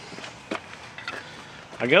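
Quiet background with a few faint, light clicks spread through it; a man's voice begins near the end.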